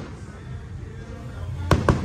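Aerial firework shells bursting: a sharp bang right at the start, then two more in quick succession near the end, with the show's music playing underneath.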